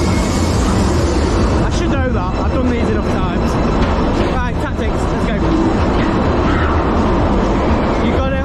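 Dodgem car driving around the rink, a steady low rumble from the car rolling on the floor, with shouting voices and fairground music over it.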